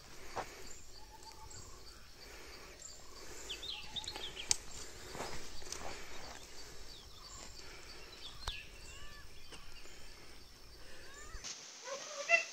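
Quiet forest ambience with scattered short bird chirps and calls, and a few sharp clicks.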